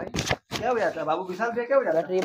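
A person's voice talking indistinctly, with one short knock a fraction of a second in.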